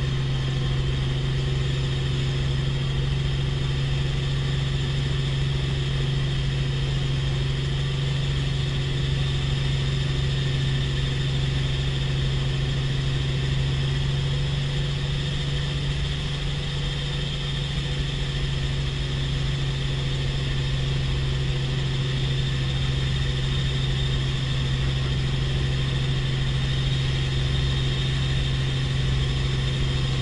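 Helicopter cabin noise in flight: the steady drone of the engine and rotor, a strong low hum with a fast flutter beneath it, unchanging throughout.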